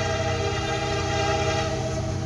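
Diesel freight locomotive's multi-chime air horn held in one long steady blast, fading out near the end, over the low rumble of the approaching train. It is blown for a grade crossing.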